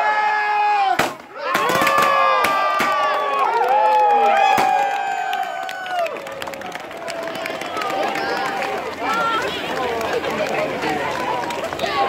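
Handheld confetti cannons going off in a quick run of sharp pops starting about a second in, over a crowd cheering and shrieking; the cheering settles into a looser crowd murmur about halfway through.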